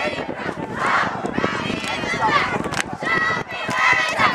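Spectators in the stands shouting and yelling during a football play, several voices overlapping without clear words.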